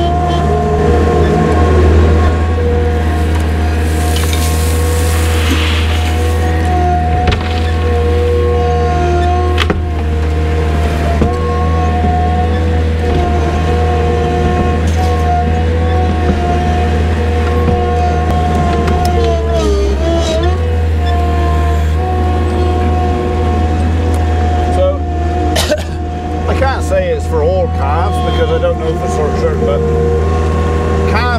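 Skid steer loader's diesel engine running steadily under the cab, with a steady whine over its low drone. Its note sags and recovers about two-thirds of the way in, as if briefly under load.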